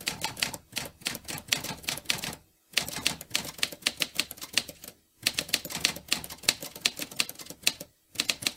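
Rapid typewriter key clacking, a typing sound effect, in three runs of quick keystrokes broken by two short pauses.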